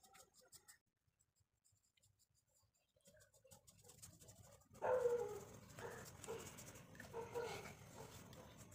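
After a near-silent start, faint wavering whimpering from an animal begins about five seconds in and recurs several times.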